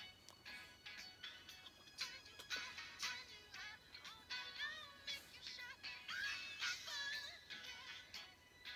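Vocal music leaking out of open-back Sennheiser HD 650 headphones and picked up in the room, faint and thin with little bass. This spill is the bleed that open-back headphones let out while they play.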